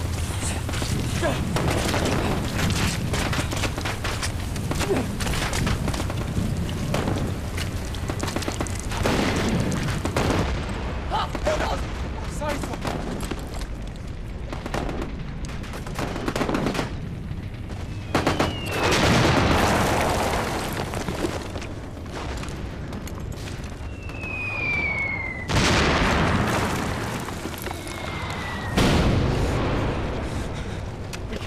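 First World War battle sound: rifle and machine-gun fire crackling on without a break. In the second half, shells whistle down with a falling pitch and explode, three times, the loudest about 25 seconds in.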